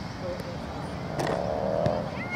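Outdoor field noise, then a sharp knock about a second in, followed by a long, high-pitched shout from a player or spectator that falls slightly in pitch and is still going at the end.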